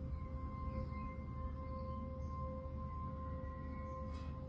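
Soft, slow background music of long held tones that change note at the start and then hold steady, over a low steady rumble.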